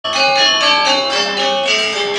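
Balinese gamelan bronze metallophones playing a quick run of struck, ringing notes, about four a second, the pitch stepping from note to note.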